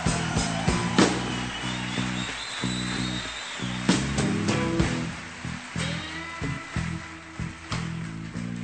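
Live rock band playing a slow song: a guitar solo of long held notes that slide in pitch, over a steady, evenly pulsed bass line and drums.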